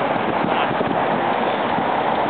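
Steady crackling rush of wind buffeting the microphone.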